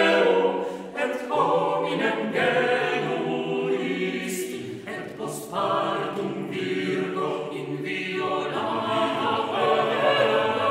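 Mixed chamber choir of sopranos, altos, tenors and basses singing unaccompanied, several sustained voice parts moving together, with two hissing 's' consonants near the middle.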